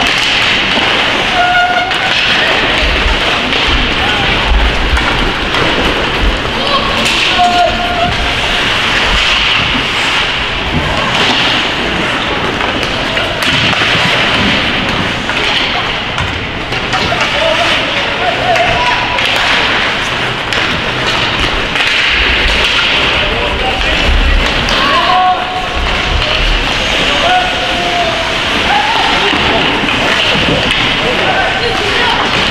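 Ice hockey game sounds in an echoing rink: a steady scrape and hiss of skates on the ice, with players' short shouts and calls and spectators' voices over it, and occasional low thuds.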